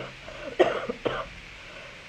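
A woman coughing into her fist in a coughing fit: three sharp coughs in the first second or so.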